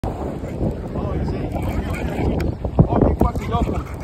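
Wind buffeting the microphone in a steady low rumble, with short bursts of voices and a couple of sharp clicks in the second half.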